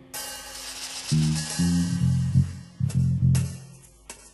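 Instrumental jazz quintet recording: a crash right at the start rings away, then low bass and guitar notes sound with the drums, with another sharp drum hit near the end.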